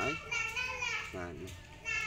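Children's high-pitched voices talking.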